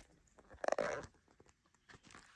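Handling noise as the camera is taken off its mount: a quick cluster of clicks and rustle about half a second to a second in, then quiet handling.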